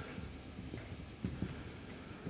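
Faint scratching of a marker pen writing on a whiteboard, in a few short strokes.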